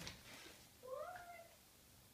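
A single short high-pitched call that rises in pitch and then holds, about half a second long, a little under a second in; a cat's meow or a small child's voice.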